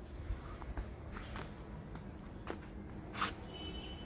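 Faint footsteps and rustling: a few soft scattered steps and clicks, with a brief louder rustle about three seconds in.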